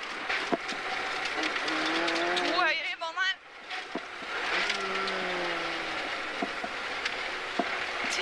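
Rally car driving fast on a snowy gravel stage, heard from inside the cabin: a steady hiss of tyres on snow under the engine note, with scattered sharp knocks. The engine note dips briefly about three seconds in as the car slows for a bend.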